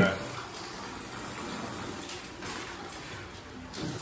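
Low, steady wash of water in a bathtub ice bath as a man shifts down to get his knees back under the icy water.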